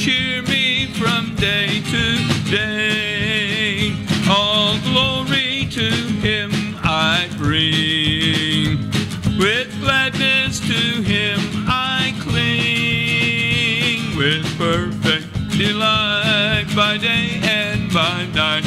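A man singing a country-gospel hymn to his own strummed acoustic guitar, with a wavering vibrato and some long held notes.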